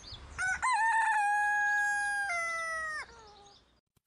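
A rooster crowing once: one long call that rises at the start, holds steady, then steps down and breaks off about three seconds in.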